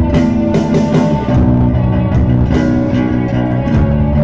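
A post-punk band playing live: electric guitar and bass holding sustained notes over steady drum hits, in a passage without vocals.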